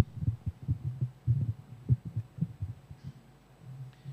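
Podium microphone handling noise: a string of irregular low thumps and rumbles as the gooseneck microphone is gripped and adjusted, dying away near the end.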